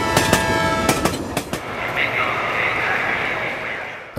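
Diesel locomotive and train running along the track. Sharp wheel clicks over the rail joints and a held tone come in the first second and a half, then a steady rush of running noise.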